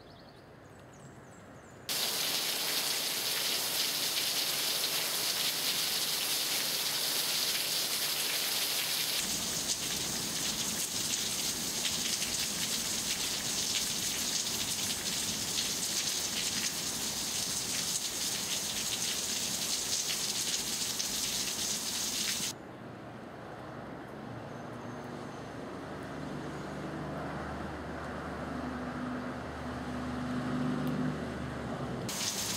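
A loud, steady hiss like heavy rain starts suddenly about two seconds in, grows fuller about nine seconds in and cuts off suddenly after about twenty seconds; after it, a quieter hiss remains, with a low hum of a few steady tones coming in near the end.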